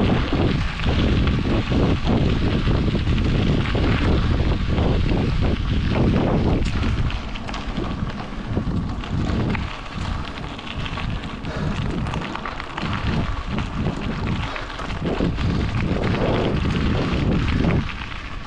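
Wind buffeting the camera's microphone while it moves along a gravel path: a loud, uneven low rumble that surges and eases.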